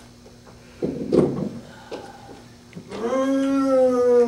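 A person's long, drawn-out vocal call, one sustained pitched sound that swells up about three seconds in and arches slightly in pitch, preceded about a second in by a brief low thump and rustle.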